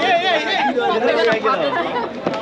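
Several people talking at once in loud overlapping chatter, one voice high and wavering near the start.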